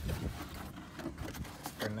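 Light rustling and handling noises, a scatter of soft short scrapes and crinkles.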